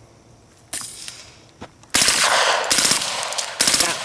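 Suppressed H&K UMP 40 submachine gun (.40 S&W) firing: a single shot about a second in, then a full-auto burst of about a second and a half, followed by another short burst near the end.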